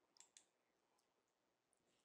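Near silence, broken by two faint clicks in quick succession just after the start.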